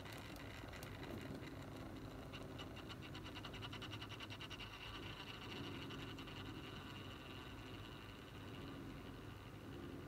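Small motorized rotating display stand turning, with a faint steady motor hum and a rapid, even ticking from its drive.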